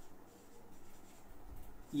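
Faint scratching of handwriting strokes, in short irregular strokes.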